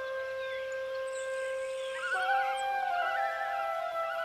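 Soft instrumental background music: held sustained notes, joined about halfway through by a melody with a wavering vibrato.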